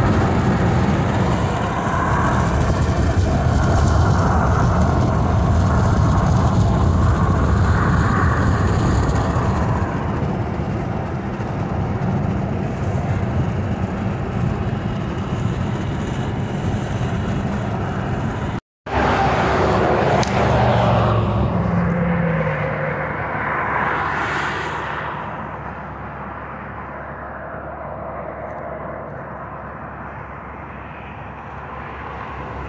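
Steady rumble of tyre and road noise inside a car cabin at highway speed. After a cut about two-thirds of the way in, a different rush of noise swells and fades over several seconds, leaving a quieter steady hum.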